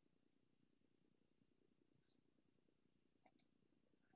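Near silence: faint room tone from a video call, with a couple of tiny ticks about three seconds in.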